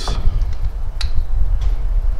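Handling of a Swagman bike rack's aluminium fork-carrier block: one sharp metal click about a second in and a fainter tick later, over a steady low rumble.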